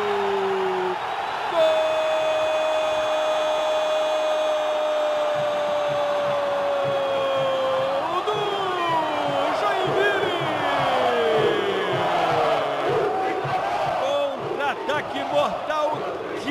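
A Brazilian football commentator's drawn-out goal shout: one long held 'gooool' of about six seconds, slowly sinking in pitch, followed by shorter falling cries, over crowd noise.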